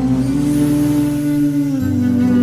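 Instrumental clarinet music: one long held note over a low accompaniment whose notes change near the end.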